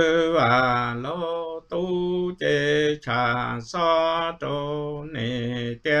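A man's unaccompanied voice singing Hmong kwv txhiaj, the traditional sung poetry, in a chanting style. It moves through a string of held syllables, each about half a second long, with brief breaks between them and a pitch that wavers and bends.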